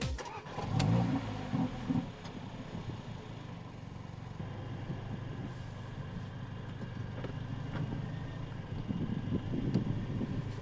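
Mercedes-AMG A45's turbocharged four-cylinder engine starting up: a brief flare of revs in the first two seconds, then settling into a steady idle.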